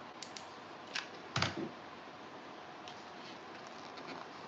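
A few light clicks and taps from craft materials and tools being handled on a work table, the loudest a single knock about one and a half seconds in.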